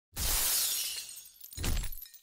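Sound effect for an animated logo intro: a sudden noisy burst that fades over about a second, then a second, shorter burst near the end.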